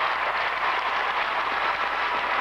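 Audience applauding steadily, a dense, even clatter of many hands.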